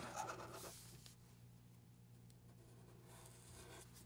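Near silence: faint sound of Sharpie felt-tip markers drawing on paper, over a faint steady low hum.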